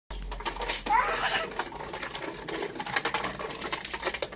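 Small plastic toddler tricycle rolling over paving slabs, its wheels rattling and clicking continuously. A short rising call cuts in about a second in.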